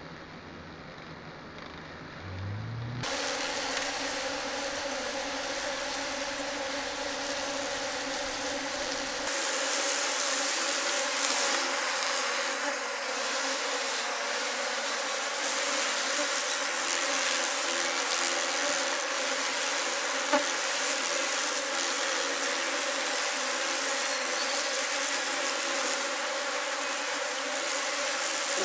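A swarm of Japanese honey bees buzzing steadily as they cling to and mob a giant hornet queen, a dense hum of many wings. The buzz grows louder about three seconds in.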